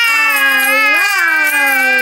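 A baby's long, loud vocal 'aaah' in answer to a question, with a brief rise in pitch about halfway through, which her mother takes as a yes.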